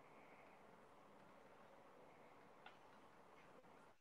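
Near silence: faint line hiss with a soft click about two-thirds of the way through.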